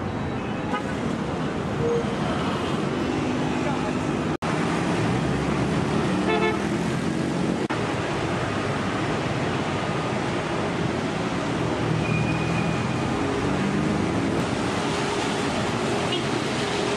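Busy city street traffic: car and scooter engines and tyre noise, with several short horn toots and indistinct voices. The sound drops out for an instant about four seconds in.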